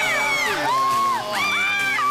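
Music playing, with high-pitched whoops from studio guests: two long rising-and-falling calls, each held about a second.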